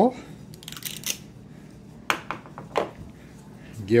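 Metal cookie scoop clicking and scraping: a cluster of small clicks about a second in, then three sharp clicks a little after two seconds, as its spring-loaded release lever is squeezed to drop a scoopful of pumpkin pie filling and the scoop is put down on a wooden board.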